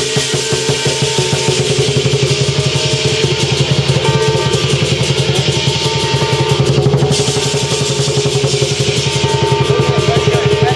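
Chinese lion dance percussion: a lion dance drum beaten in a fast, steady roll, with hand cymbals clashing over it.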